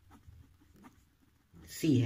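A pen writing on paper, with faint short scratching strokes as a line of working is written. A spoken word comes near the end.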